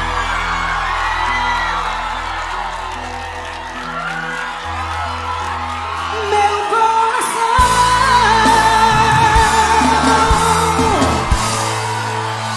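Live seresta (brega) music with singing; about halfway through a long held, wavering vocal note rises over the band while the crowd yells and cheers.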